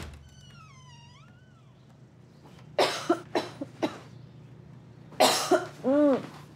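A person coughing: a short fit of several harsh coughs about three seconds in, then another cough near the end. The coughs come from someone who is ill. A brief high squeak just precedes them at the start.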